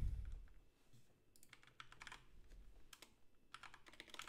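Typing on a computer keyboard, faint: two short runs of keystrokes, one about a second and a half in and another near three seconds, with a soft low thump at the very start.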